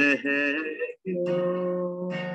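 Acoustic guitar playing with a voice singing sustained notes, the sound breaking off briefly about a second in.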